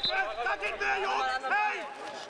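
A man shouting on a football pitch, calling out to his teammates in a raised voice.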